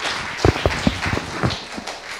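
Audience applause as an even patter, broken by about six dull thumps at irregular spacing.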